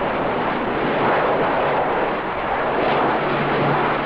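Jet engines of a large four-engine military transport plane passing low, a steady rush of jet noise with a low hum coming in near the end.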